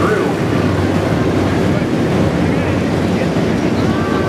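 Engines of a field of hobby stock race cars running together around a dirt oval, a loud, steady, unbroken drone.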